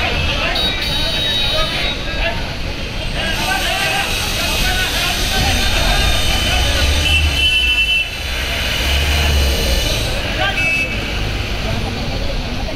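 A crowd chattering on a busy street over vehicle and motorbike traffic. A few short high-pitched toots cut through: about a second in, past the middle and near the end.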